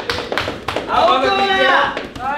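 A few sharp hand claps in the first half second or so, followed by a man's raised voice.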